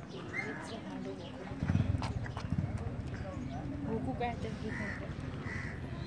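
Indistinct voice sounds with scattered clicks and knocks, and two louder low thumps about two seconds in.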